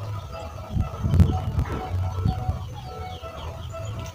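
Background music with steady notes over a pulsing bass, with a few thumps about a second in and small bird chirps in the second half.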